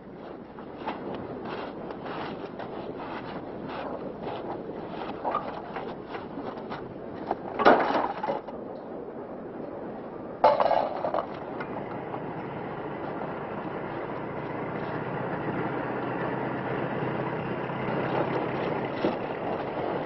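Metal tools clinking and knocking on a car as a flat tyre is changed, with two louder clanks at about eight and ten and a half seconds. A steady drone builds from about twelve seconds in.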